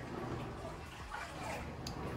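Coin-laundry washers and dryers running, a steady low hum, with a short click near the end.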